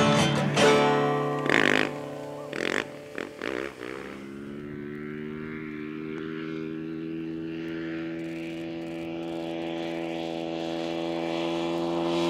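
Music with a few short loud hits fades out over the first few seconds. Then a dirt bike engine runs at steady throttle: one steady drone at a level pitch that slowly grows louder as the bike approaches.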